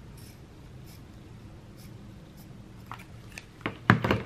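Scissors snipping through cotton fabric: a few quiet clicks and snips, with sharper clicks toward the end and a louder knock just before the end as the scissors are put down on the table, over a faint low hum.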